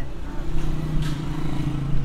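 Car engine idling, a steady low hum, with street traffic around it.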